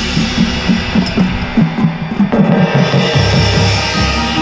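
Marimba played fast with mallets, heard up close inside a loud ensemble of drums and cymbals that fills the whole range of the sound.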